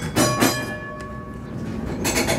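Electric tram's gong struck twice in quick succession, its ringing tone then hanging on.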